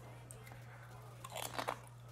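A bite into a crunchy chip and chewing, heard as a short cluster of crunches about a second and a half in.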